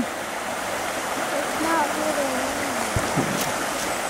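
Creek water flowing steadily over rapids, with a faint distant voice in the middle and a soft bump about three seconds in.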